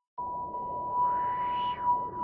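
The electronic intro of a song in the background music: a steady high tone over a hiss starts suddenly, and a swell of noise rises and falls about a second in.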